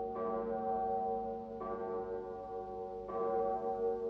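A bell tolling, struck three times about a second and a half apart, each strike ringing on under the next.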